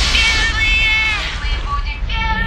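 Closing bars of a Europop dance track: over the low beat, a high pitched note is held and then slides down about a second in.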